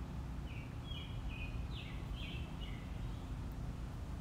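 A bird chirping: a quick run of about seven short, high notes in the first three seconds, over a steady low background hum.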